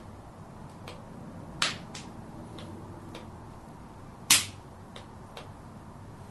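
Sharp clicks or knocks: two loud ones about two and a half seconds apart, with several fainter ticks scattered between them.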